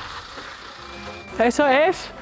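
A low steady rumble under background music, then a loud voice for about half a second near the end, its pitch rising and falling.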